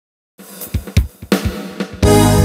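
Drum kit playing the opening fill of a karaoke backing track, coming in about a third of a second in. It has a few low kick thumps with hi-hat, snare and cymbal hits, building toward the full band entry.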